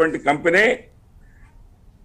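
A man speaking; his voice glides sharply up in pitch on a drawn-out syllable, then breaks off into a pause of about a second.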